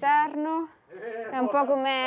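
Only speech: a woman's voice talking, with a short pause just under a second in.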